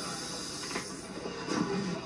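A sudden, steady hiss lasting about a second and a half, with a couple of sharp stomps from a step team, played through a TV's speaker.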